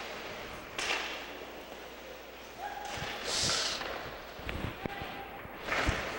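Ice hockey play heard in an arena: thuds of players and the puck against the rink boards, one about a second in and another near the end, with a hiss of skate blades scraping the ice in the middle and a voice or two calling out.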